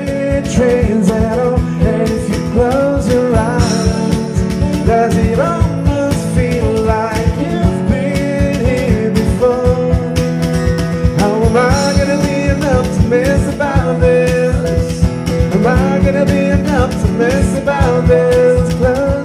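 Acoustic trio playing an up-tempo R&B song: a steady, fast cajon beat under guitar and a woman singing. The song starts right at the beginning.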